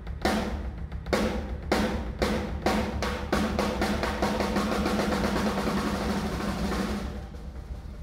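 Drum kit with Meinl cymbals playing a closing flourish: heavy accented hits with crashing cymbals about every half second, then a continuous roll under cymbal wash from about three seconds in. It stops about seven seconds in and rings away.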